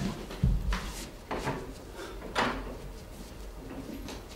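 A wooden door being handled: a low thud about half a second in, then several short knocks and scrapes.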